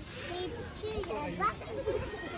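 Voices of children and other people talking and calling, several overlapping, with no clear words.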